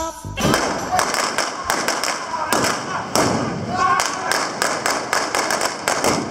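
A rapid, irregular string of blank gunshots from revolvers in a staged gunfight, with a voice heard between the shots.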